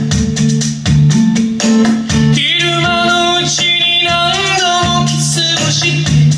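Gibson J-160E acoustic-electric guitar (1968) strummed in a steady rhythm, with a man singing a Japanese pop ballad over it; the voice comes in a couple of seconds in and carries one long phrase for about three seconds.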